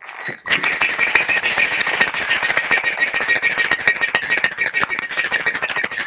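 Metal cocktail shaker packed full of ice being shaken hard: fast, continuous rattling of ice against the tin, starting about half a second in.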